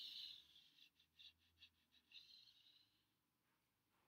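Near silence, with a faint soft hiss near the start and again about two seconds in, and a few faint ticks between.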